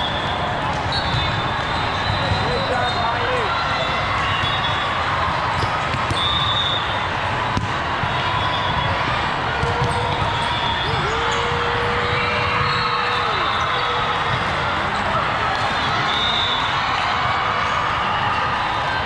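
Indoor volleyball being played: balls being hit and bouncing on the courts, with short high shoe squeaks over a steady babble of voices in a large hall.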